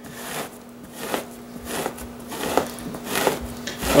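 Dull two-handled fleshing blade drawn down a salted whitetail deer hide over a wooden fleshing beam, making a series of short scraping strokes, nearly two a second. The blade is stripping the membrane off the flesh side of the hide so the pickle solution can penetrate.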